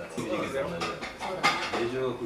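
Murmured voices at a dining table, with a sharp clink of tableware about one and a half seconds in as bowls and chopsticks are handled.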